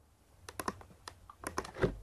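A run of light, irregular clicks from a computer mouse and keyboard, with a slightly heavier knock near the end.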